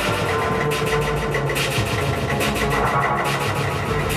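Electro music played from vinyl on Technics turntables through a DJ mixer. It runs continuously with a steady beat of quick, evenly spaced ticks over a moving bass line.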